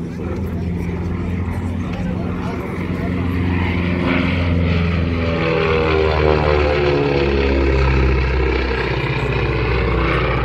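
Twin Pratt & Whitney R-985 radial engines of a Beechcraft E.18S on a low fly past. The drone grows louder as the aircraft comes over about six seconds in, then drops in pitch as it passes and moves away.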